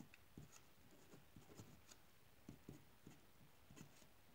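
Faint scratching of a uni-ball pen writing on paper, in a series of short strokes.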